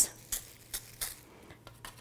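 Old toothbrush bristles flicked by a plastic-wrapped fingertip to spatter watercolor onto paper: a few faint, irregular flicks.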